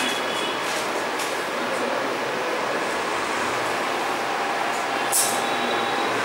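Whiteboard marker drawing circuit lines: brief scratchy, squeaky strokes, one at the start and a sharper one about five seconds in, over a steady hiss.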